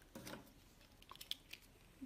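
Near silence with faint handling noise as a desk stapler is picked up and fitted over a folded paper strip: a soft knock early on, then a few light clicks.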